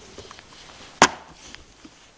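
A hardcover book set down on a wooden side table: one sharp knock of wood about a second in, with a few faint small ticks of handling around it.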